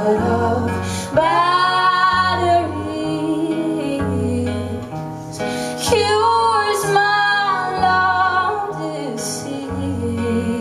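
A woman singing long, held notes, with a slight waver, in two phrases, over a strummed acoustic guitar. A cello holds low bowed notes underneath, moving to a new note about once a second.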